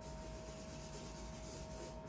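Faint, steady rubbing of a pen drawing on paper.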